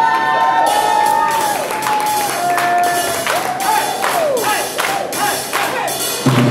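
Live swing band music: a held melody line with sliding notes, with the crowd cheering and clapping as it plays.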